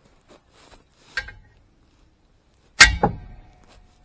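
A heavy splitting maul strikes a wrench fitted on a seized truck lug nut to shock it loose. A lighter metal knock comes about a second in, then a loud metallic clang with a quick second hit, and a ringing that fades.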